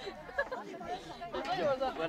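Several people chattering, with no clear words, and one voice growing louder near the end.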